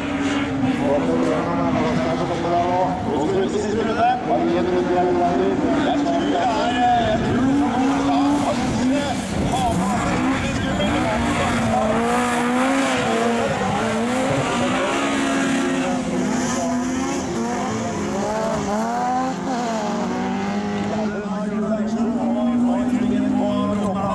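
Super 2000 rallycross cars racing on the track, their engines revving up and down again and again as they accelerate, shift and lift off through the corners.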